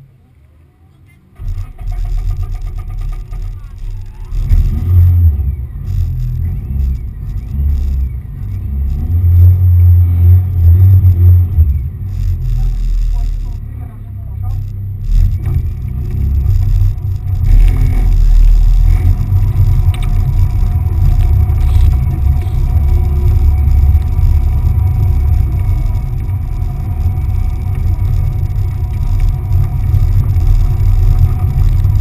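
Car engine starting about a second and a half in, then running with a deep, loud rumble and several surges in revs as the car sets off.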